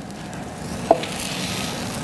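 Hot rotisserie chicken being worked off the metal spit onto a wooden cutting board: a sizzling, scraping noise that grows louder toward the end, with a short sharp squeak about a second in.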